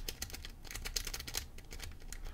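A triple-peak lock-pick rake jiggled and raked in and out of a five-pin padlock under very light tension. The steel pick makes quiet, rapid, irregular clicking and scraping over the pin tumblers.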